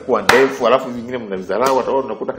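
A voice talking, with two sharp taps, one just after the start and one near the end.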